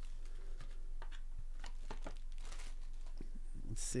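Foil wrapping and a cardboard box rustling and crinkling as a trading card pack is handled and lifted out, in scattered small clicks and rustles.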